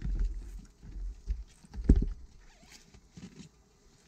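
Rumbling, rustling handling noise on a body-worn camera's microphone as the wearer's jacket shifts and a ratchet strap is handled, with one sharp thump about two seconds in. It fades to faint rustles in the last two seconds.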